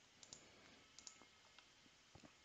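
Near silence with two pairs of faint, short clicks from a computer mouse button, one pair a quarter second in and another about a second in.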